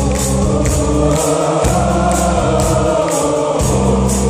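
Live heavy metal band and orchestra playing, with sustained choir-like singing over drums and cymbal hits about twice a second.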